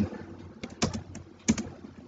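Keystrokes on a computer keyboard: a handful of separate key presses with short pauses between them.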